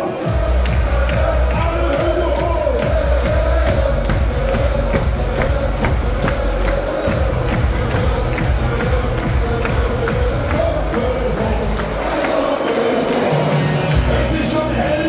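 Party schlager music played live over a club PA with a heavy thumping bass beat, and a large crowd singing along. The bass drops out briefly near the end, then comes back.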